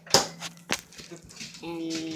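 Two sharp knocks about half a second apart over a low steady hum, then a child's voice holding a drawn-out word.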